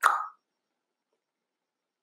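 Dead silence, broken only by one short soft pop right at the start.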